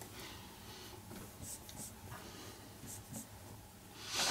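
Faint strokes of a felt-tip marker pen on paper, drawing underlines: a few short strokes with quiet pauses between.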